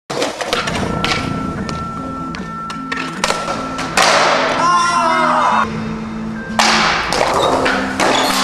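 Skateboard sounds, with sharp board clicks and thuds of tricks and landings and stretches of wheels rolling or grinding on concrete, over a music track with a steady bassline.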